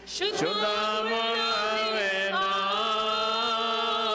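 Orthodox liturgical chant: voices singing a slow melody in long held notes, broken by a brief pause at the very start.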